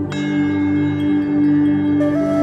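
Relaxing background music: a bell-like chime is struck just after the start and rings out over a steady low drone.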